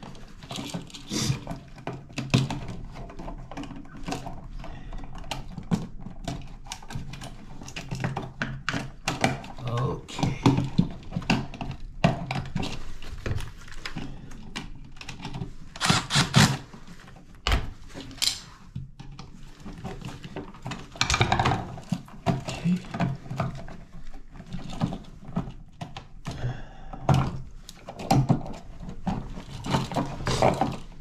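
Clicks, knocks and rattles of hand work on a GFCI receptacle: wires being moved on its terminal screws and the device handled in its metal wall box. About 16 seconds in, a cordless drill/driver runs briefly to drive the receptacle's screws.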